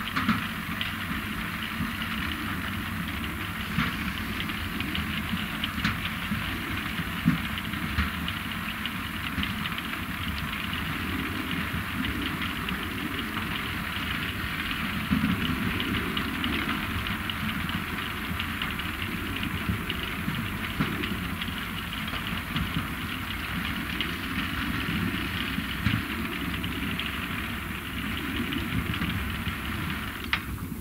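ROPA Maus 5 sugar beet cleaning loader at work: its engine running steadily under a continuous rattling clatter of beets tumbling through the pickup and cleaning rollers and up the conveyor into a truck, with now and then a louder knock.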